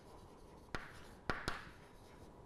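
Chalk writing on a blackboard: three sharp taps as the chalk strikes the board, in the second half, each followed by a short scratchy stroke. Faint.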